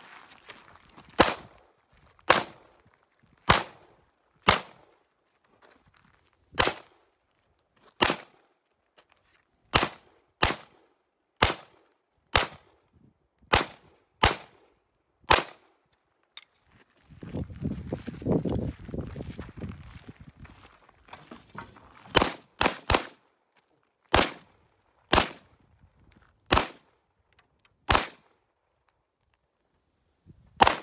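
Glock 17 Gen3 9mm pistol fired in a steady string of single shots, roughly one a second, about nineteen in all. The shots break off for several seconds about halfway through, where a low rumble fills the gap.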